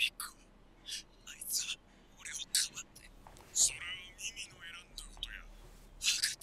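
Faint, thin-sounding dialogue from an anime episode, heard as short broken bursts of speech that come across much like whispering.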